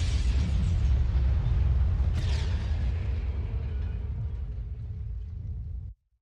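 Deep fiery rumble sound effect as the title logo bursts into flame, with a falling whoosh about two seconds in; it fades slowly and cuts off abruptly just before the end.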